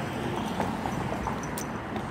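Footsteps on a concrete sidewalk, faint irregular steps over steady outdoor street noise.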